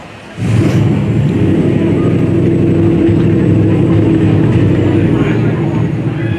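A car engine comes in abruptly about half a second in and runs loud and steady.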